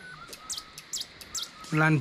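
A small bird chirping in the forest: a few short, high chirps about half a second apart, followed near the end by a man's voice.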